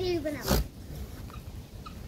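A goat bleating, the call ending about half a second in, followed at once by a short sharp noise.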